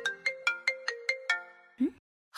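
Mobile phone ringtone playing a quick melody of short chime-like notes, about five a second, signalling an incoming call; it stops about a second and a half in as the call is answered.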